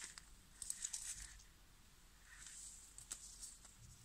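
Faint rustling and a few light clicks from hands handling two lace-trimmed foam Christmas ball ornaments with ribbon loops, in short spells about a second in and again about two and a half seconds in.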